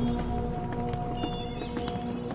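Drama background score of sustained notes, with a scattering of short, irregular knocks underneath.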